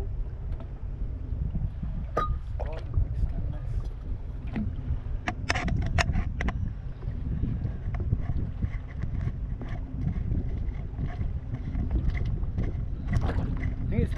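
Wind rumbling on the microphone and water lapping around a small drifting fishing boat, with a few sharp knocks about two seconds in and again around five to six seconds in.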